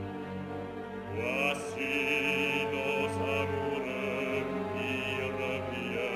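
Male operatic voice singing held phrases with vibrato over orchestral accompaniment.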